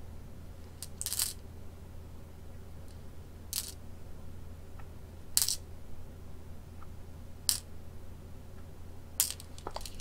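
Go stones clicking sharply against the wooden board and against each other as they are handled, five single clicks spaced a second and a half to two seconds apart, over a low steady hum.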